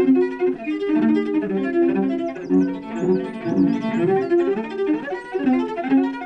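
Solo cello played with the bow in an improvised piece: a quick, unbroken run of short notes, several a second.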